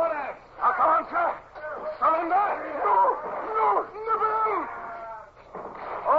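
Several men shouting and yelling over one another in a staged radio-drama sea battle, with no clear words: the clamour of a boarding fight.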